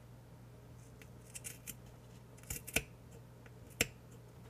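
Small scissors snipping cotton fabric, trimming the frayed edge of a tiny pillow: a few soft snips about a second in, then sharper cuts around two and a half seconds and one more near the end.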